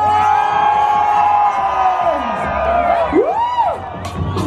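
Live concert music, loud over the festival PA: a long held note that sags slowly, then a quick rising-and-falling swoop near the end, over a pulsing bass beat, with the crowd cheering.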